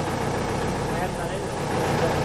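A narrowboat's engine running steadily as the boat cruises, with a fast, even chugging pulse.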